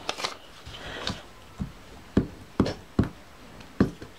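Hands handling scraps of paper on a tabletop: paper rustling, with several short, light knocks as pieces are picked up and set down.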